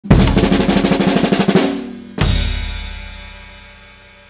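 Acoustic drum kit: a fast roll of evenly spaced strokes lasting about a second and a half, then a single loud hit about two seconds in that rings on and fades slowly.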